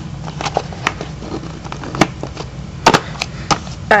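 A box and its contents being handled: a string of scattered knocks and taps, the loudest about two and three seconds in.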